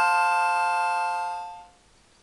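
Harmonica sounding one held chord, which fades out about one and a half seconds in.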